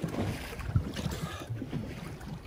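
Sea water splashing and lapping around a spearfisherman at the surface of a choppy sea, with wind noise on the microphone.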